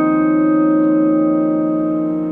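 Solo piano: a chord held and ringing, slowly fading, with no new notes struck.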